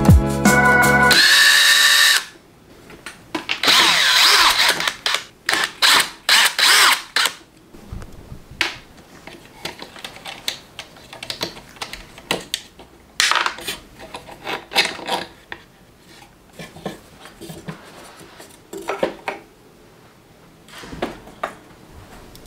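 Cordless drill running in two short bursts, its whine wavering in pitch as it drives or backs out screws in a wooden stand. Many small clicks and knocks of metal hardware and wood being handled follow.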